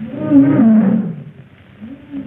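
A lion roaring: one loud call lasting about a second, then a shorter, fainter one near the end.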